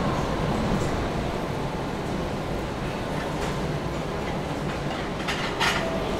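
Steady running noise of a chip-packaging line's machinery and conveyor, with a faint low hum and a short louder burst of hiss near the end.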